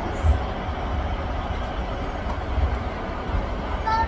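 Dull low thumps of a child's fists pounding a woman's back as a massage, irregular, over a steady low rumble.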